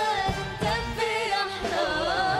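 A live band playing an Arabic pop song, with a singing voice carrying a wavering melody over percussion and low drum strokes.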